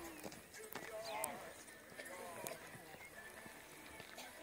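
A grey pony cantering on a sand arena, its hoofbeats heard among people talking in the background.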